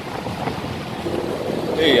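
Steady rush of wind and water from a boat moving across open sea, with wind buffeting the microphone.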